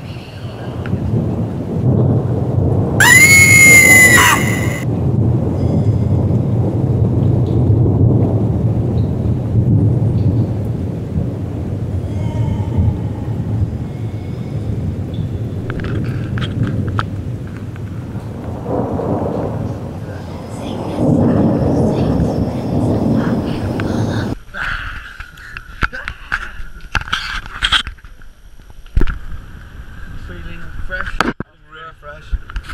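Loud, steady thunder-and-rain rumble, with a brief whining tone about three seconds in that rises and then holds. The rumble cuts off suddenly near the end, giving way to voices and clicks.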